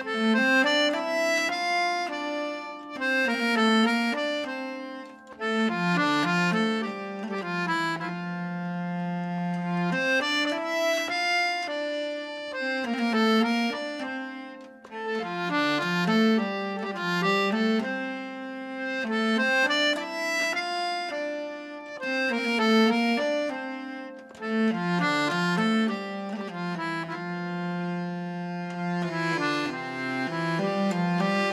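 Accordion and hurdy-gurdy playing a Scandinavian folk tune together: a melody with a moving bass line, its phrases repeating about every ten seconds.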